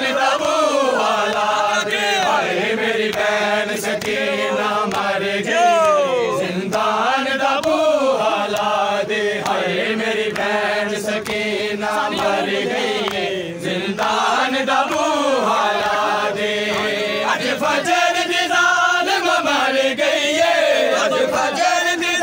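Men's voices chanting a noha, a Shia mourning lament, in a continuous melodic line with sliding pitch, among a crowd of mourners.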